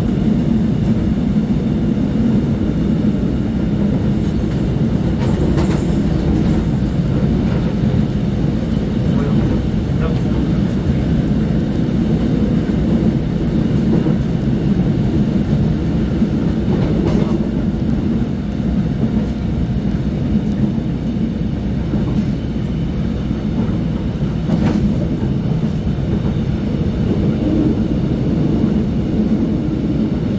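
Steady low rumble of trains running side by side on adjacent tracks, heard from inside a passenger car as a Suin-Bundang Line class 351000 commuter train set is hauled past. A few faint clicks come through.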